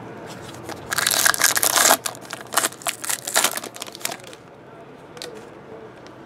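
A foil trading-card pack wrapper torn open with a loud ripping crinkle about a second in, followed by a couple of seconds of lighter crackling as the wrapper is crumpled and the cards are pulled out.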